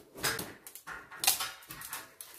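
Aluminium stepladder clattering against a corrugated metal roller shutter as it is set up: two knocks, the second louder with a short metallic ring.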